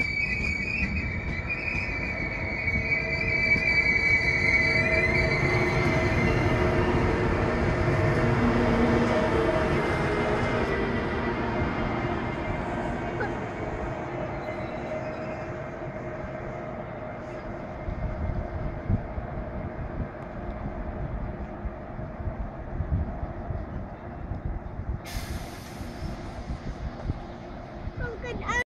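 ICE high-speed train running slowly past close by, its wheels squealing in a steady high tone for the first few seconds over the rumble of wheels on rail. The rumble then slowly fades, with a short hiss near the end.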